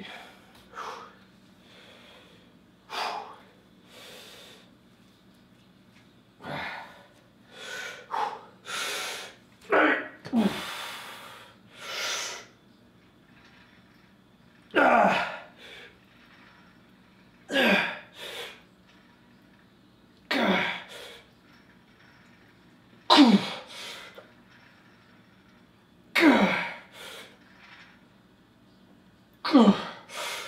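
A man breathing hard and sharply as he braces for a set of weighted dips. Then a forceful grunting exhale about every three seconds, one with each rep, its pitch dropping each time.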